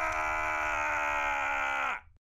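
An animated knight's long, drawn-out scream as he falls, held on one pitch, sagging slightly at the end and then cut off abruptly.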